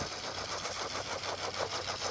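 Danchee RidgeRock RC crawler's twin 37-turn brushed 380-size motors and gear train whining steadily as the truck climbs a steep concrete ramp under load.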